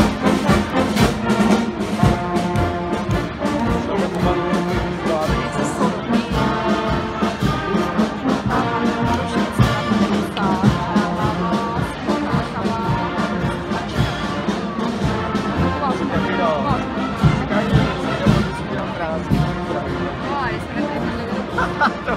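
Marching brass band playing a march in the street, trumpets and trombones over a steady bass-drum beat. It grows a little duller near the end as the band moves on.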